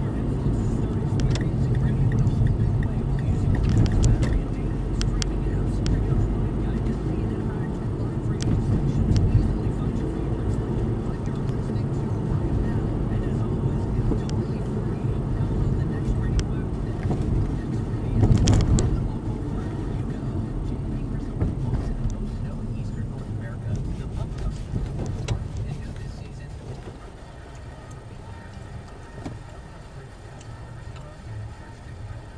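Car driving, heard from inside the cabin: a steady low rumble of engine and tyres on the road, with a few light knocks and one louder bump about eighteen seconds in. The noise dies down over the last few seconds as the car slows behind the vehicle ahead.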